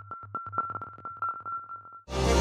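Electronic music: a synthesizer pulse repeating about four times a second over a held high tone, with soft low beats, fading away.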